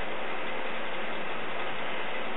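Steady, even hiss of background noise: room tone with no distinct event.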